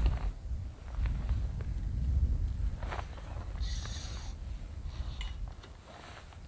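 Gusting wind buffeting the microphone, an uneven low rumble that swells and eases. A brief high-pitched buzz comes a little past the middle, with a few faint clicks of handling.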